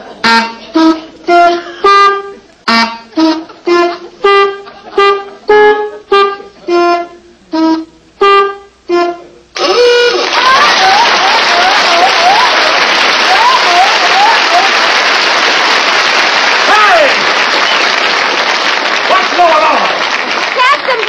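A tune honked out on a set of rubber-bulb horns: about fourteen short honks, each at a different pitch. About two-thirds of the way in, a studio audience suddenly breaks into loud laughter and applause that carries on.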